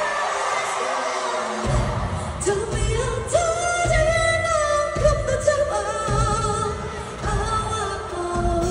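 Live K-pop concert heard from the audience seats of a large arena: a woman singing over a band through the PA. The bass and drums drop out for the first second and a half, then come back in as her voice slides up into a long held note.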